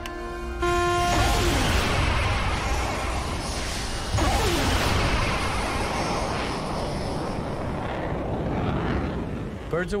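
Shipboard surface-to-air missiles launching off their rails: a sudden loud rush of rocket exhaust about half a second in, a second launch about four seconds in, the noise slowly easing off under dramatic music.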